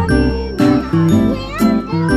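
Music with a steady beat: bass, plucked notes and a melody with sliding pitches.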